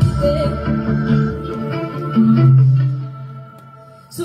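Instrumental pop music between sung lines, no voice. A low note is held about halfway through, then the music fades down over the last second or so.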